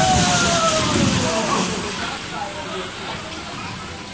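Water rushing and sloshing in a boat dark ride's channel as the boats glide along, with an indistinct voice in the first second and a half.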